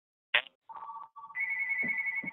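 An electronic phone ringtone: steady, pulsing tones, with a higher tone joining partway through. It comes just after a brief, sharp burst of sound.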